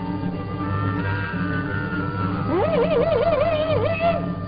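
Cartoon background music: a steady, pulsing bass line, then about two and a half seconds in a lead note slides up and holds with a wide, wobbling vibrato.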